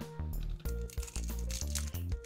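Background music with a steady low line, over the crinkling and tearing of a foil trading card booster pack being pulled open by hand.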